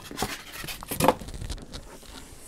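Cardboard shipping box being handled: a few soft knocks and scrapes of cardboard, the clearest about a second in.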